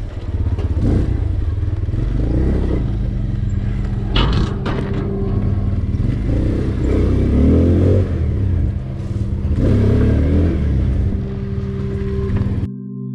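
Small motorcycle engine running as it is ridden slowly, the revs rising and falling, with a brief clatter about four seconds in.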